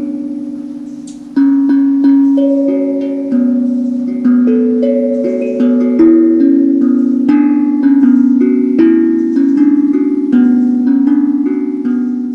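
Handpan (hang drum) played solo: struck steel notes ringing with long sustain, overlapping into a slow, melodic run of roughly two notes a second, with no percussion beat or bass under it.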